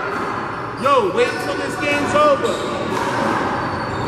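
A handball bouncing on the court in a large hall, with a few short, sharp pitched sounds about a second in and again near the middle.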